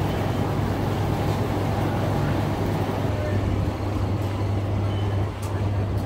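A steady low machine hum with a rushing noise over it, unchanging throughout.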